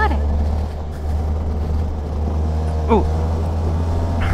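Engine of a 125cc go-kart running steadily under way, a constant low drone heard from on board the kart.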